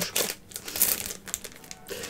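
Plastic wrapper of a sticker pack being crinkled in the hands as it is handled and opened, with a run of irregular crackles.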